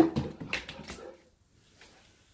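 Saint Bernard making short excited vocal sounds in the first second or so, fading away after that.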